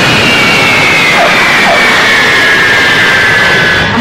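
Jet airliner's engines at full power on takeoff: a loud, steady roar with a high whine that slowly falls in pitch.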